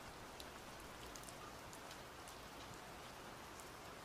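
Faint steady rain, an even hiss of rainfall with scattered small drop ticks.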